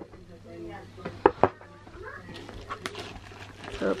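Cardboard product box being opened and handled, with a couple of sharp knocks about a second and a half in. Faint voices in the background.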